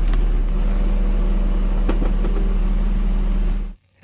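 Steady, loud low drone of a diesel-pusher motorhome's machinery running, with no change in pitch; it cuts off abruptly near the end.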